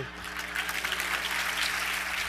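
Audience applauding steadily at the end of a talk.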